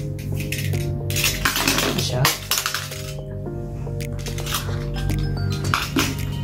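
Utility knife slitting the plastic seal of a cardboard box in several short scraping strokes, over background music with held notes; a light clink near the end as the knife is set down on the table.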